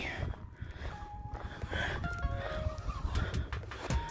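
Wind rumbling on the microphone, with a few faint short tones about halfway through.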